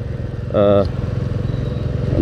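Royal Enfield Classic 350's single-cylinder engine running steadily as the motorcycle is ridden along, its low, even thump carrying through.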